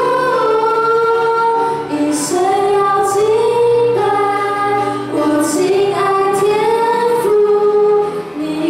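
Two young women singing a Mandarin Christian worship song into microphones with upright piano accompaniment, holding long notes that step from one pitch to the next.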